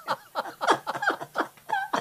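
A man laughing hard in rapid bursts of 'ha', about five a second, ending in a high-pitched squeal near the end. This is deliberate laughter done as a laughter-yoga exercise.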